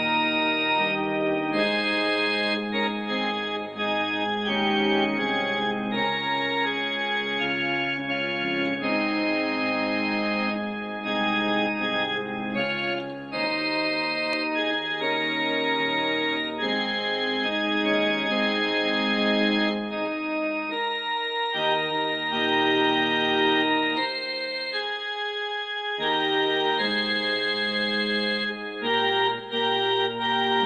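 Casio CT-656 electronic keyboard played with both hands: a tune in sustained chords, the notes held steadily rather than dying away.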